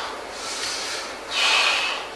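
A man breathing out heavily in exasperation, a weaker breath at the start and a louder, longer one just past halfway.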